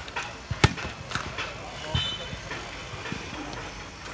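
Volleyball hit by hand during a rally: one sharp slap a little over half a second in, then a few fainter hits, with players' and spectators' voices around it.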